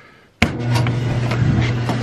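Clothes dryer starting: one sharp click about half a second in, then the steady low hum of the dryer running.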